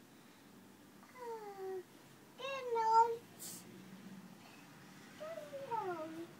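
A toddler's high, drawn-out vocal calls, three in a row, the first and last sliding down in pitch.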